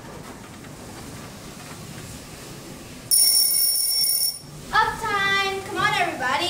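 Alarm clock sound effect: a sudden high, steady electronic ring about three seconds in, lasting just over a second, followed near the end by a child's voice calling out.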